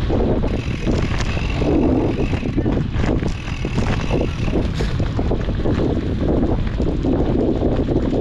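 Wind buffeting an action camera's microphone on a moving mountain bike, with the rumble and rattle of the bike rolling over a dirt singletrack trail.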